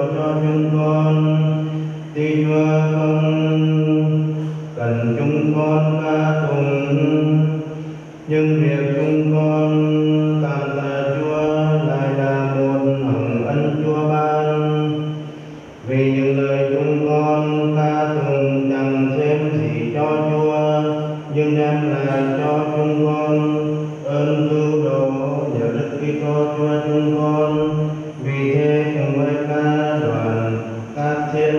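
A man's voice chanting a sung prayer of the Mass in long, steady held notes. It moves in phrases of a few seconds, with brief pauses between them and a longer pause a little before the middle.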